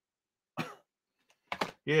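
A man clearing his throat: a short cough-like burst about half a second in and another brief one about a second later, just before he starts speaking again.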